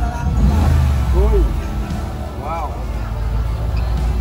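A motor vehicle's engine running with a low rumble that is heaviest in the first couple of seconds, over background music and voices.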